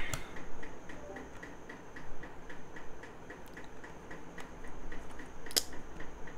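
Faint, irregular clicks and taps from a digital drawing pen being handled and tried after it has stopped working, with one sharper click near the end.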